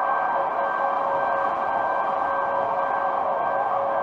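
A steady, even drone of noise with two faint held tones running through it, unchanging in level.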